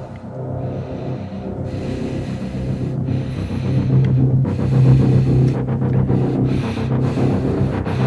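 Tense suspense film score: a low sustained droning note that swells steadily louder, under a series of short hissing sounds.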